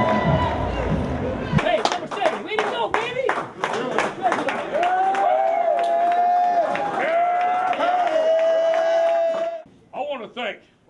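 Football team celebrating in the locker room: a burst of hand claps and short shouts, then several voices yelling long held shouts together, cutting off abruptly near the end. A low rumble of stadium noise is heard at the start.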